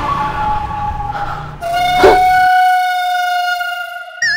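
Comedy sound-effect music: held electronic tones ring over the scene. A new, lower tone comes in about one and a half seconds in, with a sharp hit just after it, and the bass drops away near the middle.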